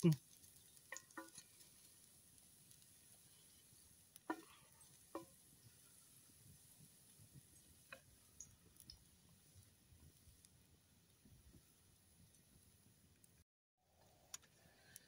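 Chopped garlic sautéing in oil in a frying pan over a wood fire: a faint, steady sizzle with a few sharp clicks, the clearest about four and five seconds in. The sound cuts out for a moment near the end.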